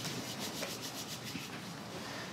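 Faint rubbing noise over a steady room hiss, with a light scratchy texture in the first second.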